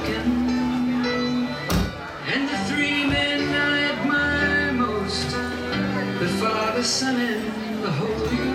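Live band playing: saxophone holding long notes over electric guitar, electric bass and a drum kit, with occasional cymbal and drum hits.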